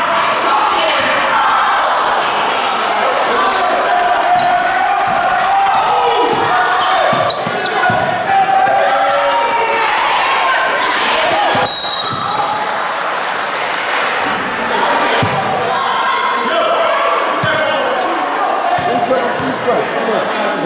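Basketball bouncing on a hardwood gym floor during play, under a steady din of many spectators' voices and shouts echoing in a large gymnasium. A short high squeal sounds about twelve seconds in.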